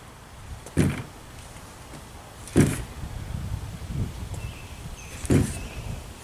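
Kick scooter landing on a sloped board again and again, its wheels and deck banging down: three loud bangs about two seconds apart, with a softer knock between the last two.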